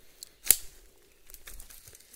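Footsteps rustling through dry bamboo leaf litter, with one sharp snap about half a second in, the loudest sound.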